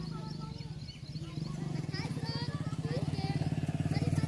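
An engine running with a rapid, even throb that gets louder from about halfway through, with faint high chirps over it.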